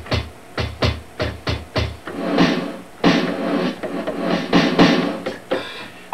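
Drum-kit sounds of an Ensoniq SQ-2 synthesizer played from its keys: a quick run of sharp drum hits, then longer ringing hits from about two seconds in.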